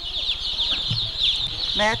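A large flock of baby chicks peeping continuously, many short falling peeps overlapping into one dense chorus.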